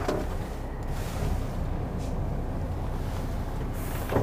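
HGV diesel engine idling, heard inside the cab as a steady low rumble while the lorry waits at red lights.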